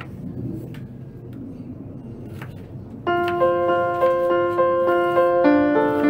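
A kitchen knife slicing bitter gourd on a plastic cutting board, a few separate sharp cuts. About halfway in, background music of steady held notes starts and becomes the loudest sound.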